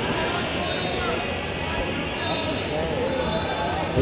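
Busy wrestling-tournament hall ambience: many overlapping distant voices echoing in a large hall, with a few scattered thuds.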